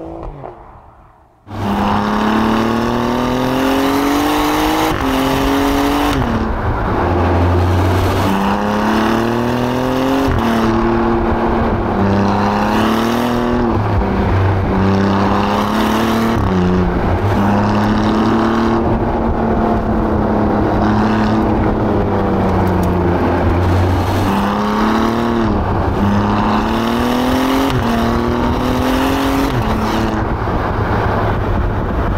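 Alfa Romeo Giulia Quadrifoglio's twin-turbo V6 accelerating hard through the gears. The note starts abruptly about a second and a half in, then repeatedly rises in pitch and drops sharply at each upshift before climbing again.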